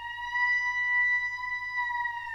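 A Rigoutat oboe played solo, holding one long high note that bends slowly up a little in pitch and back down.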